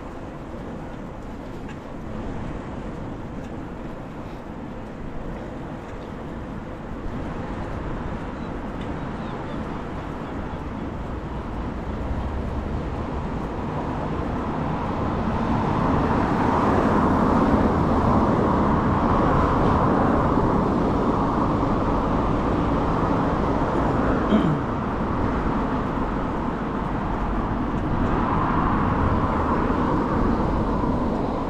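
City road traffic and the rushing noise of riding, heard from a moving bicycle; it grows louder about halfway through as the bike nears a busier junction with cars alongside. A short click comes about three-quarters of the way through.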